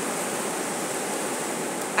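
Ocean surf, a steady, even wash of noise.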